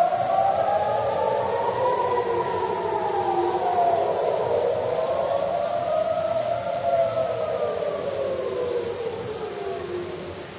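Civil-defence air-raid sirens wailing, several at once and out of step, each slowly rising and falling in pitch: a rocket-attack warning. They ease off a little near the end.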